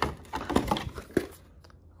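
Clear plastic packaging tray crinkling and clicking as an airsoft pistol is pulled out of it: a quick run of short clicks and rustles that tails off after about a second.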